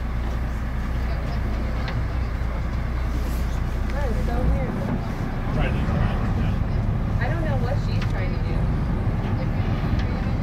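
Boat engine running with a steady low rumble, its deepest part dropping away about halfway through, with faint people's voices over it.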